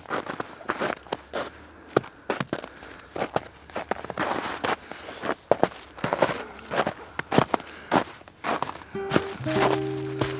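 Footsteps crunching and crackling through dry fallen leaves and twigs on a forest trail, irregular steps throughout. About nine seconds in, a few steady held musical notes come in under the steps.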